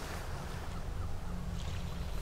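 Steady low wind rumble buffeting a clip-on lavalier microphone at the coast, with no distinct sound above it.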